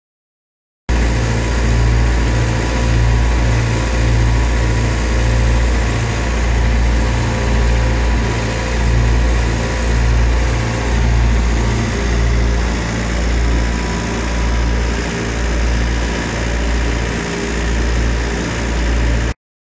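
Engine running steadily at close range, starting suddenly about a second in: a heavy low rumble that swells and eases about once a second, with steady hum tones above it.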